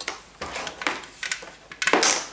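Plastic clicks from a Pop-Up Olaf barrel toy as plastic sticks are pushed into its slots and handled: a run of short, sharp clicks about every half second.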